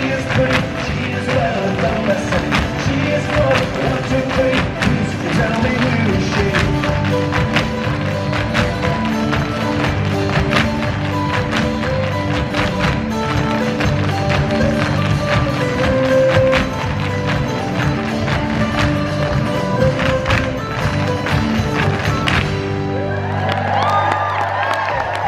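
Recorded Irish dance tune played over the taps of a troupe of Irish dancers' hard shoes striking the stage in rhythm. Near the end the taps stop and the music closes on a held note.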